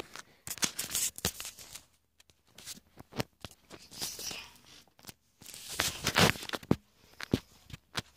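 Handling noise from the recording phone: scrapes, rustles and knocks as it is carried and moved about, with a louder stretch of rubbing and rustling about six seconds in.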